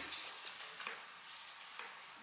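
Faint steady hiss of room noise with a few soft clicks, fading slightly.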